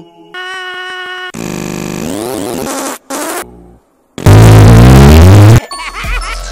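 Chopped-up, heavily edited cartoon audio: a held pitched tone cuts to a dense warbling, sweeping stretch, drops to a moment of silence, then bursts into a very loud, distorted blast lasting over a second before cutting off.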